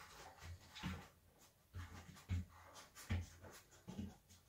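Faint scuffs and a few soft knocks as a dog noses a rolled-up foam mat open across a wooden floor.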